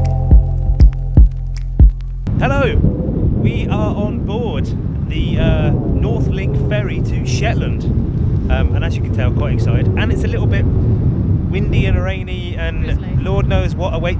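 Background music with a steady beat for about two seconds, then strong wind buffeting the microphone on an open ship's deck, with voices and laughter over it.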